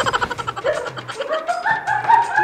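Chicken sound effect: a quick run of clucks, then a call that climbs in pitch in steps from about a second in.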